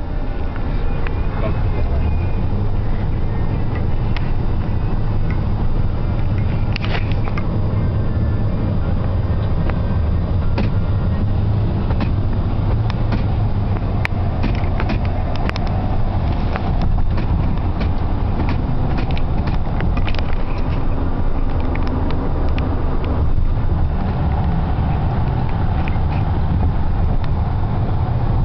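Cabin noise inside a 2008 Dodge Grand Caravan minivan driving in freeway traffic: a steady low road and engine rumble, with scattered light clicks and knocks around the middle.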